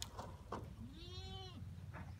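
A goat bleating once: a single call of under a second that rises and then falls in pitch. Two short clicks come just before it, over a steady low rumble.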